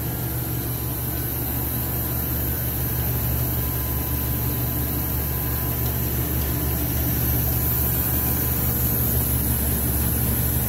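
Hilliard chocolate enrobing line running: a steady low machine hum of its motors and drives, growing slightly louder near the end.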